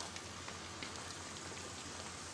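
Steady outdoor ambience: an even hiss sprinkled with faint scattered ticks, over a constant low hum.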